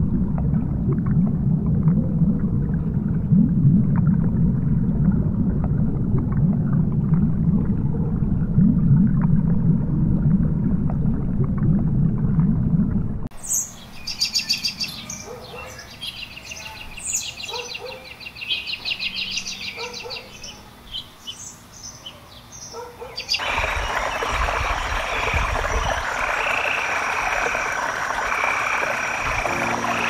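A deep underwater rumble, cutting off about 13 seconds in to high, rapid chirping trills. About 23 seconds in, a frog chorus takes over, croaking in steady repeated calls.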